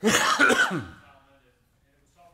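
A man's short, loud laugh right at the microphone, lasting about a second and falling in pitch as it dies away.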